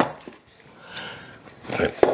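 A wooden tea caddy knocks once on a wooden tabletop, followed by faint rubbing as its lid is worked open.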